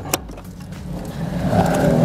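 Third-row seat of a Toyota Innova being folded down: a short latch click at the start, then a noise that grows louder as the seatback swings forward.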